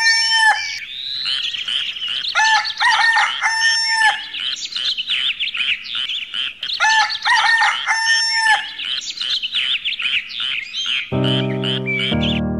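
A rooster crowing three times, about three and a half seconds apart, over continuous chirping of small birds; piano music comes in near the end.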